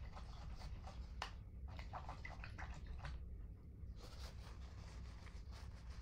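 Faint handling sounds from cleaning a paintbrush and wiping it on a paper towel: scattered small clicks, taps and rustles, the sharpest about a second in, over a low steady hum.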